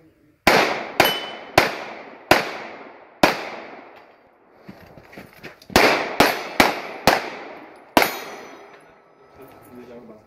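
Ten pistol shots in two strings of five: the first string spaced about half a second to a second apart, then a pause of about two and a half seconds, then a quicker second string. Each shot is a sharp crack with a short echo.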